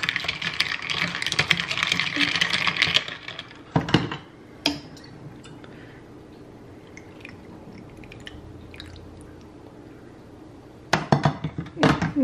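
Ice cubes clinking and rattling against a glass as iced coffee is stirred with a straw, for about three seconds. Then two sharp knocks, a quieter stretch with faint clinks, and more knocks and clinking near the end.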